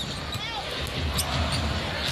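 Basketball dribbled on a hardwood court over steady arena crowd noise, with a few sharp clicks and a short squeak near the start.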